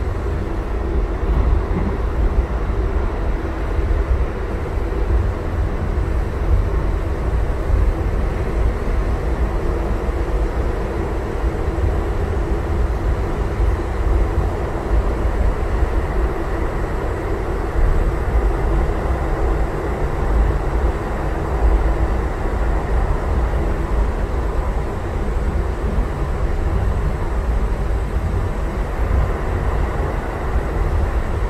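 Light rail car running, heard from inside the passenger cabin: a steady low rumble of wheels on the rails and running gear, with a few faint steady tones above it.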